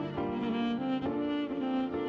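Violin playing a slow, sad melody with vibrato over a backing arrangement with sustained low notes.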